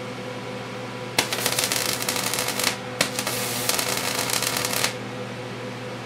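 Solid-state Tesla coil firing in two bursts, the first about a second in and the second a little later, each a loud, rapid crackling of electrical discharge, over a steady electrical hum.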